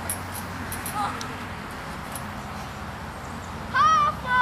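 Steady outdoor background with faint high chirps, a brief pitched vocal sound about a second in, and a loud, high-pitched wavering cry or yelp near the end.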